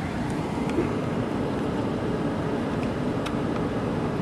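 Steady road and engine noise heard from inside a moving car, a low even rumble.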